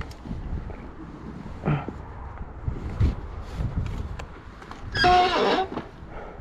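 Fat-tire e-bike rolling through packed snow: a rough, low rumble with irregular knocks from the tires and frame. Near the end comes a short, loud pitched sound, the loudest thing here.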